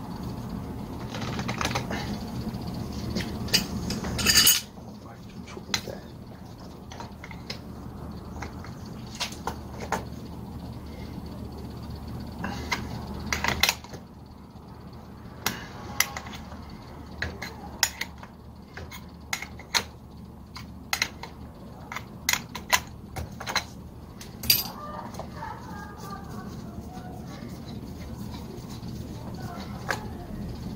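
Hand tools and metal fittings clicking and clinking in scattered sharp knocks as a pressure gauge is worked loose from an air compressor's pressure switch block held in a vise. There is a louder clatter about four seconds in, and a steady low hum stops just after it.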